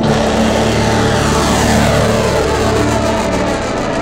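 HEAT-1X rocket's hybrid motor firing at liftoff, a loud rushing noise that starts suddenly and holds steady as the rocket climbs.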